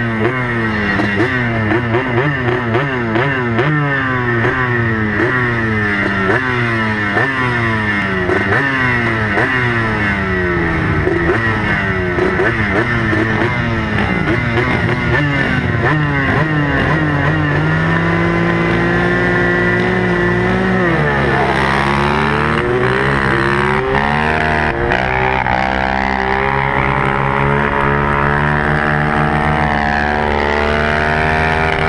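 Racing ATV engine heard up close: for the first half it is revved in short, regular rises about once a second, then held at a steadier pitch. From a little past two-thirds of the way in it accelerates hard, the pitch climbing again and again through the gears, with other quads' engines mixed in.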